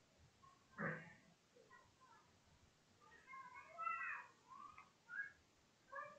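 Faint pitched animal calls over near silence: a short one about a second in, then several short calls rising and falling in pitch around the middle.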